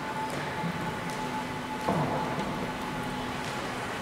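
Small electric guitar amplifier humming and hissing with a steady tone, with a sudden knock about halfway through followed by a short falling tone.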